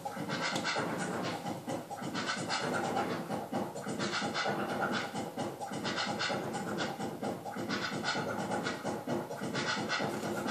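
Wooden stir sticks scratching and scraping, in quick repeated strokes without a break.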